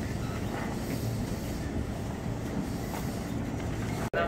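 Stationary KRL 205-series electric commuter train standing at a platform with its doors open, its running equipment giving a steady low hum and rumble.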